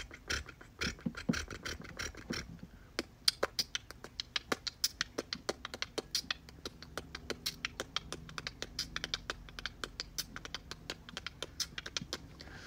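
A run of quick, sharp taps or clicks close to the microphone, coming unevenly at about three to five a second.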